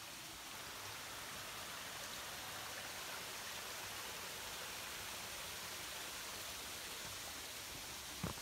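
Steady rushing hiss of a small rocky creek's running water, even throughout with no separate sounds standing out.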